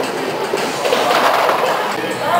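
Bowling ball rolling down a wooden lane, a steady rumble.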